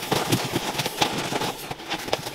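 Paper towel rubbed briskly over a desk top while wiping it clean: a scrubbing hiss broken by small knocks and clicks.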